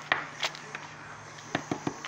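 A few sharp scrapes and knocks as a soft plaster excavation block is picked at and crumbled over a paper plate: one just after the start, one about half a second in, and three close together near the end.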